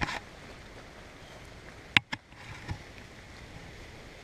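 Faint steady outdoor background noise, broken about halfway through by a sharp click and a smaller one just after it.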